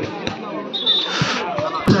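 Volleyball knocks on an outdoor court: a few soft thuds, then a sharp, loud one near the end, over crowd murmur.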